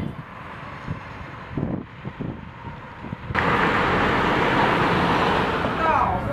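Outdoor background noise, low and rumbling at first. Just past halfway it cuts abruptly to a louder, steady hiss.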